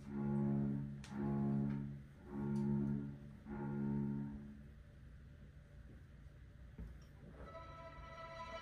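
Live chamber ensemble of bowed strings, cello and double bass most prominent, playing the same sustained chord five times in swelling strokes about a second apart. The chords die away about halfway through, leaving a quiet stretch.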